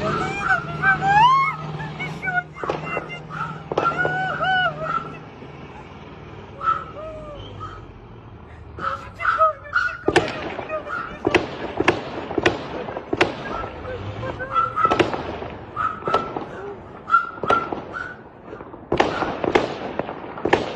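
Gunfire: sharp single shots at irregular intervals, often several within a second, starting about halfway through and going on to the end. Before the shots, short rising-and-falling calls sound over a low hum.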